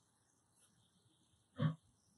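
A single brief throat noise from a person, a short low grunt-like sound about one and a half seconds in, over a faint steady high-pitched hiss.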